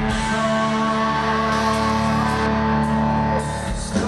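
Live rock band playing: electric guitars hold a chord that rings steadily over bass and drums, with no singing in this passage.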